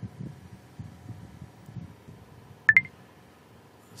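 A sharp click about two-thirds of the way in, heard as a quick press-and-release pair, over faint low background noise.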